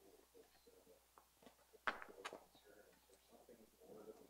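Near silence: quiet room tone with a faint low murmur and two light clicks about two seconds in.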